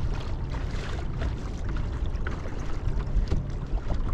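Wind buffeting the microphone, with water slapping against the hull of a small boat on choppy water.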